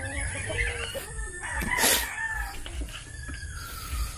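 Rooster crowing, one long drawn-out call that slowly falls in pitch, with a sharp knock about two seconds in.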